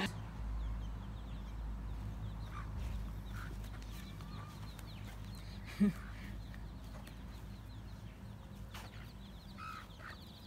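A hen clucking softly a few times, with chicks nearby, over a steady low rumble; a short thump about six seconds in is the loudest sound.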